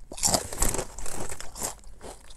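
A person chewing ridged Ruffles Flamin' Hot BBQ potato chips with the mouth close to the microphone: a run of irregular crisp crunches.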